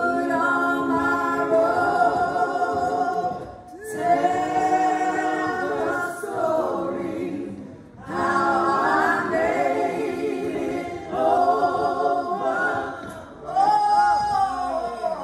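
Voices singing a hymn together without accompaniment, in long held phrases with a slight waver, broken by short pauses about every four seconds.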